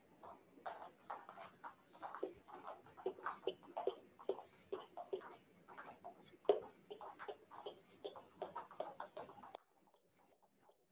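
Jump ropes slapping the foam floor mats and feet landing as two people skip rope: a light, uneven patter of about three taps a second that stops shortly before the end.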